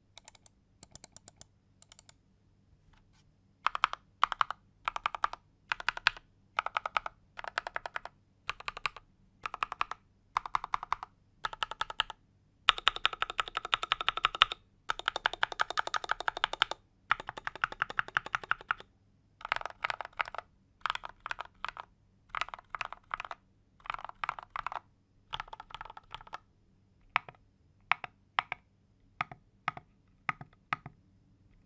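Typing on a macropad fitted with Gateron Milky Yellow linear switches, an FR4 plate with plate foam, and double-shot SAL-profile keycaps. A few single keystrokes come first, then bursts of key clacks with short pauses between them, and the fastest steady run comes in the middle of the stretch.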